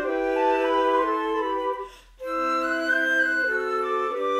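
Four flute parts playing together in harmony, holding sustained chords that change together. All the parts break off briefly just before two seconds in, then come back in together.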